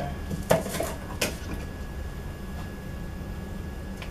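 A utensil knocking twice against a metal cooking pot, about two-thirds of a second apart, as marshmallow fluff is scraped off into it, over a low steady hum.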